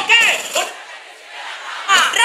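Loud shouting voice over crowd noise. The shouting breaks off less than a second in, leaving a short lull of quieter crowd noise, and starts again right at the end.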